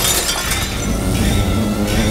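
Window glass shattering and then tinkling over a film's orchestral score.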